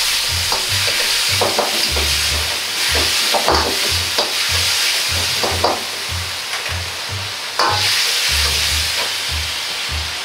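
Pork and mushrooms sizzling hard in a wok on a high-flame burner, with a metal ladle stirring them and clanking against the wok several times.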